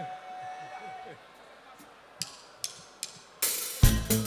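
A hushed pause with a faint held note. Then three sharp clicks evenly spaced, a drummer's stick count-in, before the live band with its drum kit comes in loudly near the end.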